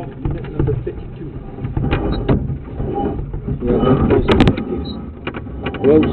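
Low rumbling with scattered knocks and clicks, and a sharper knock about four and a half seconds in.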